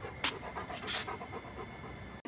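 A dog breathing in short, noisy huffs with its nose to the floor, two louder ones a quarter second in and about a second in.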